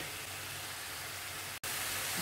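Ground coconut paste sizzling in a frying pan: a steady, even hiss, broken by a split-second dropout about one and a half seconds in.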